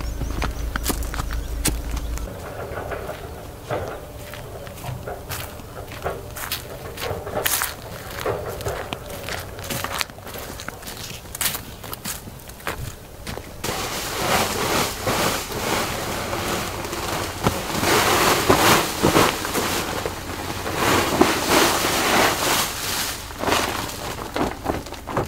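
Footsteps of a person in rubber boots walking down a dirt path, each step a short scuff or knock. From about halfway through, a louder, steady rustling noise joins the steps.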